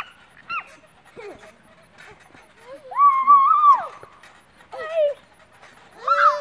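High-pitched squeals and calls from young children: a few short cries, then one longer, loudest squeal about three seconds in, and a shorter one near the end.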